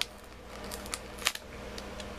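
Cardboard box handled and turned in the hands: a few light clicks and scrapes of the cardboard, the sharpest a little past the middle, over a faint steady low hum.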